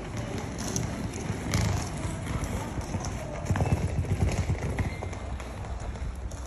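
Wheeled suitcase rolling over stone paving, its wheels clattering in quick irregular knocks at the paving joints.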